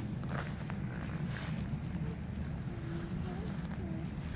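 Wind buffeting the microphone, a steady low rumble, with a few faint high gliding calls or voices in the second half.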